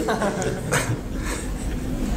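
Soft, breathy laughter, without words.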